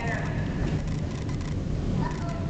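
Steady low background rumble with faint voices, one of them briefly clearer near the start.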